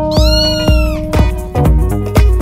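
A single cat meow, rising then falling in pitch and lasting under a second, over electronic dance music with a steady beat.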